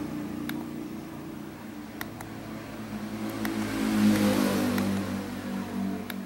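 Steady low hum of a motor vehicle engine that grows louder about four seconds in and then eases off. A few short sharp clicks sit on top of it, among them two close together about two seconds in.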